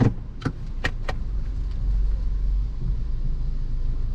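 A Subaru's engine running steadily at idle, heard as a low rumble from inside the cabin, with a few sharp clicks in the first second.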